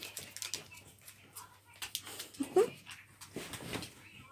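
Yorkshire terrier giving a short rising whine about two and a half seconds in, among faint scattered rustles and knocks.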